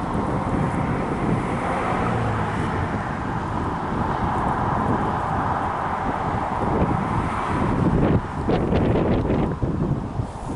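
Steady highway traffic noise with wind buffeting the microphone, and a few short crackles near the end.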